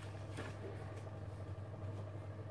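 Quiet room with a steady low hum, and a faint brief rustle of paperback pages being leafed through about half a second in.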